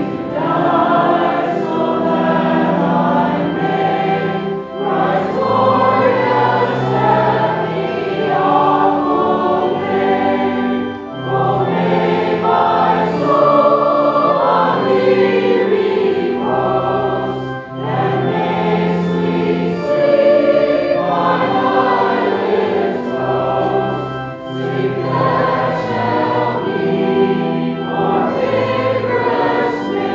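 A congregation singing a hymn with accompaniment, in long phrases with a short break about every six seconds.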